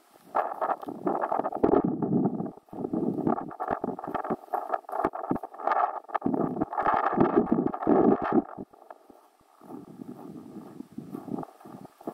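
Footsteps crunching over packed snow, in uneven bursts that ease off for a second or so near the end.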